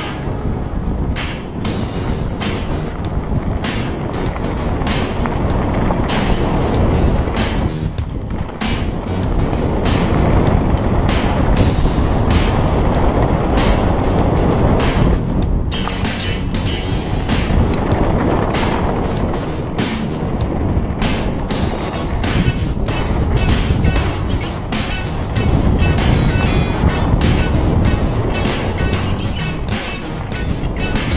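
Wind rushing over a helmet-mounted camera and a downhill mountain bike rattling over a rough dirt trail at speed, with many sharp knocks from bumps and roots.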